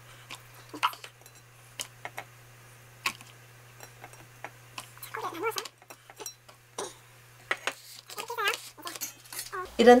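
Light scattered clicks and taps of clear plastic food containers and a ceramic plate being handled as slices of boiled beef are laid into the containers, with a faint murmured voice now and then.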